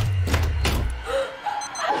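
Horror movie-trailer sound design: a sudden deep boom with a low rumble that dies away after about a second, and two sharp clicks.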